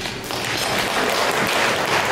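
Audience applauding, growing slightly louder through the clapping.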